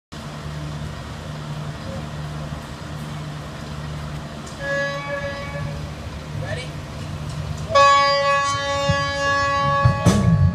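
Electric guitar holding long sustained notes over a low steady hum. A high held note comes in about halfway, and a louder, fuller one near the end.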